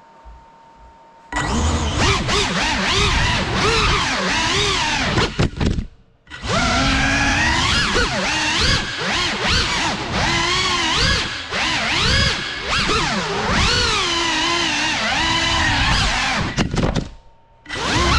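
Cinelog 35 ducted FPV quadcopter on 6S power, its brushless motors whining at high pitch, the whine rising and falling with throttle. It starts loudly about a second in and cuts out briefly twice, about six seconds in and again near the end, as the throttle is chopped.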